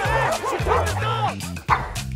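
A pug barking and yipping in short calls over background music, with a sharp hit near the end.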